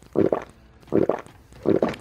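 A person making loud pretend gulping noises with the mouth while tipping back a toy cup, three gulps about three-quarters of a second apart.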